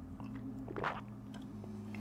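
Faint sips and slurps of hot coffee taken from a ceramic mug, a few short soft strokes with the clearest a little under a second in, over a faint steady low hum.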